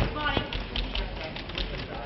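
Indistinct voices with scattered light taps over a steady low hum.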